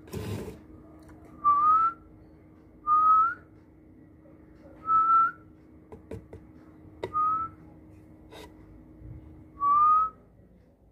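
A person whistling five short notes, each rising slightly in pitch and lasting about half a second, spaced roughly two seconds apart. A few light clicks fall between the notes, over a faint steady hum.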